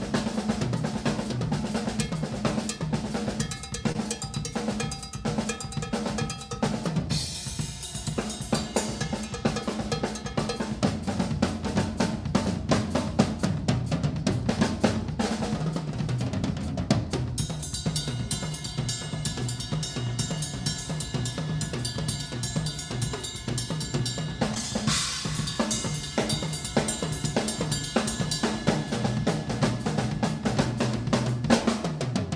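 Pearl drum kit played fast and without a break: rapid bass drum and snare strokes under ringing cymbals. Cymbals crash about seven seconds in and again about 25 seconds in.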